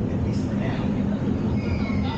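Steady, loud low rumble from a space-shuttle launch-simulator ride, its simulated engine roar and shaking cabin during the ascent. Faint voices are heard over it.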